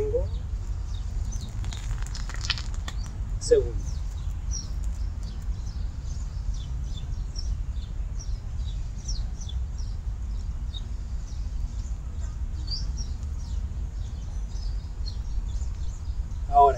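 Small birds chirping in many short, high calls scattered throughout, over a steady low rumble.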